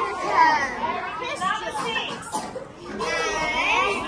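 A roomful of young children's voices talking over one another at once, high-pitched and overlapping, with no single voice standing out.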